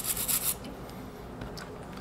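A soft copper brush scrubbing the inside of an espresso machine's E61 group head in quick back-and-forth strokes. The scrubbing stops about half a second in.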